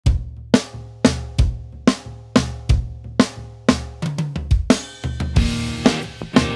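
Intro of a recorded indie rock song: a drum-kit beat of kick and snare strokes about two a second. Busier drumming joins around four seconds in, then a cymbal wash and held pitched notes near the end.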